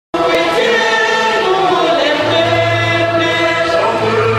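Church choir singing a hymn, several voices in sustained notes, cutting in abruptly at the start; a low steady bass note joins a little past halfway.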